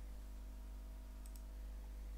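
A computer mouse button clicked once, a quick press-and-release pair of clicks a little past halfway, over a steady low electrical hum.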